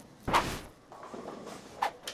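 A short, sharp whoosh about a third of a second in, followed by a faint rustle and a brief click near the end.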